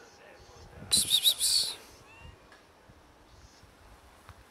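A bird's loud, harsh chattering call, under a second long, about a second in, followed by a faint short whistled note.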